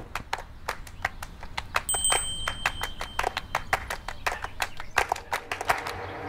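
A rapid, uneven run of sharp clicks or taps, several a second, with a brief thin high steady tone about two seconds in.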